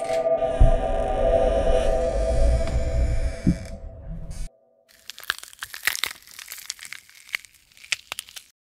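A horror soundtrack cue: a dense drone with held tones and a deep rumble cuts off abruptly about four and a half seconds in. After a brief gap comes a run of irregular crackles and clicks.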